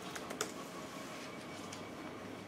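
Quiet room tone with a few short, faint clicks in the first half-second.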